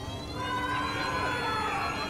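A siren wailing, its pitch rising slowly and easing back near the end.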